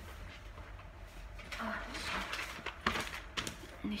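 Faint rustling and a few light clicks and knocks from small objects being handled and picked up, over a low steady rumble.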